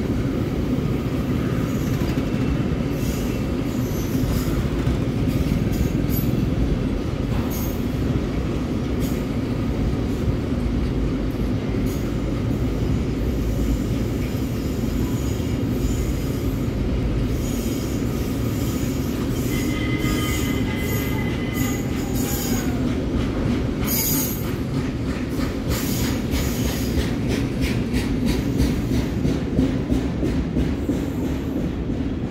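Freight train of covered goods wagons rolling past: a steady rumble of steel wheels on rail, with a brief wheel squeal about twenty seconds in and sharp clicks of wheels over rail joints that come thicker near the end.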